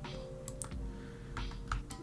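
Soft background music with held notes, under about four sharp clicks from a computer keyboard and mouse as modifier keys are held and selections are clicked.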